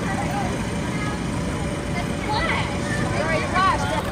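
Steady low rumble and hum of an inflatable slide's electric blower fan running. Children's voices call out over it in the second half.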